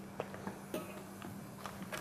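Quiet kitchen room tone with a steady low hum and a few faint clicks of kitchen equipment being handled over a glass bowl.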